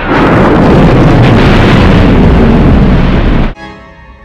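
Movie sound effect of a planet being blown up by the Death Star's superlaser: one loud, sustained explosion lasting about three and a half seconds that cuts off suddenly.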